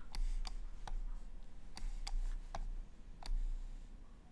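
Computer mouse clicking: a string of short, sharp single clicks, irregularly spaced, about two a second, over a faint low hum.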